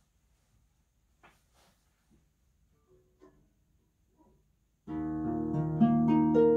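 Near silence with a few faint soft knocks, then about five seconds in a harp begins to play: several plucked notes ring out together and more notes enter, ringing on over one another.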